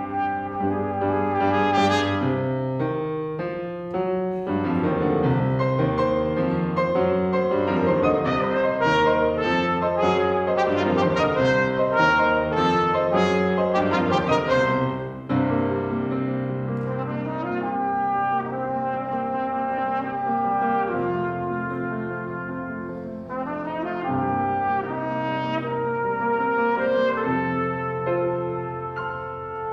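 Trumpet and grand piano playing a classical duet, the trumpet carrying the melody over the piano accompaniment, with a brief lull about halfway through.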